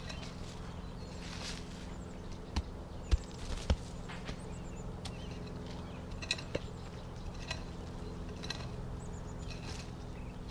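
Flat adze end of a pick mattock scraping and chopping through wood-chip mulch and soil: soft scrapes with a few sharp knocks, three of them loudest about three seconds in, over a steady low hum.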